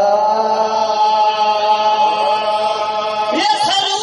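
Qawwali singing: a voice holds one long, steady note, then glides upward into a new phrase about three and a half seconds in.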